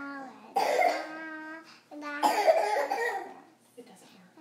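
A young girl singing in a loud, belting voice: a held note, then two loud, raspy phrases with a shorter held note between them.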